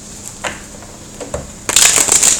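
A deck of tarot cards being handled and shuffled by hand. A few light taps and clicks come first, then a loud burst of card shuffling near the end.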